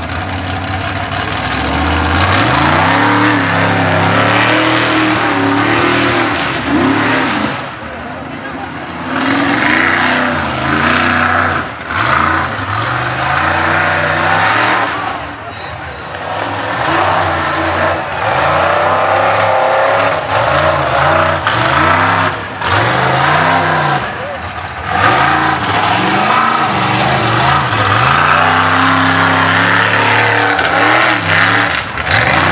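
Mud bog race truck's engine idling, then revved hard from about two seconds in. The revs swing up and down over and over as the truck throws itself through the mud pit, its tyres spinning and grabbing.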